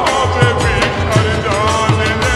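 Slowed-down, reverb-heavy version of a Bengali song. A deep, pitch-dropping kick drum beats about three times a second under a wavering melodic line.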